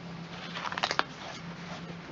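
Cardstock pages of a ring-bound scrapbook being turned by hand: a soft paper rustle with a few light clicks about a second in.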